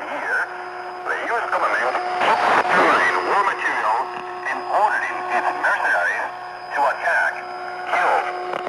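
Speech heard through shortwave radio reception, thin and degraded, with faint steady whistling tones coming and going underneath.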